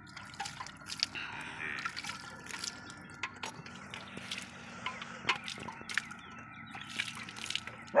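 Milk squirting from a water buffalo's teats into a steel bucket during hand milking: irregular spurts and splashes throughout.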